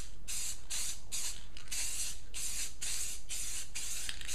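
Aerosol can of silver spray paint hissing in short, quick bursts, about two or three a second, as a light misting coat goes onto bare wood trim.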